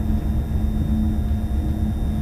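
Electric train running along the track: a steady low rumble with a continuous hum.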